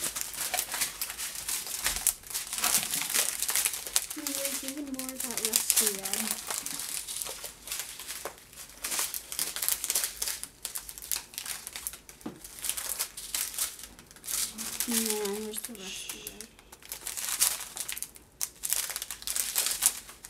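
Strips of small clear plastic packets of diamond-painting drills crinkling and rustling as they are handled, in a dense irregular crackle.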